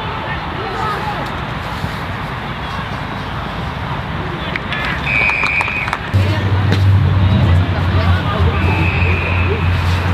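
Spectators talking around a football ground, with two short, steady umpire's whistle blasts about five and nine seconds in. A steady low hum comes in about six seconds in and stays.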